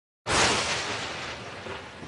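Logo intro sound effect: a sudden loud, noisy boom about a quarter of a second in, which slowly fades away.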